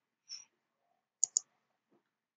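Two quick computer mouse-button clicks, a tenth of a second apart, a little past halfway through; a faint short noise comes just after the start.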